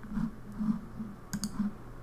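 A computer mouse button clicking once about one and a half seconds in: a quick double tick of press and release.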